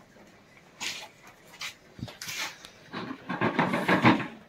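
Russell's viper hissing inside a plastic jar: short breathy hisses that come closer together and grow louder over the last second.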